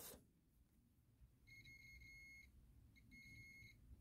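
Digital multimeter's continuity beeper sounding twice, faint and steady: a high beep of about a second, then a shorter one. The beeps confirm the wire connects through to the RCA plug being probed.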